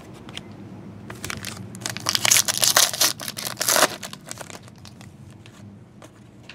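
Trading card pack wrapper crinkling as it is torn open, loudest for about two seconds in the middle, with light clicks and rustles of cards being handled around it.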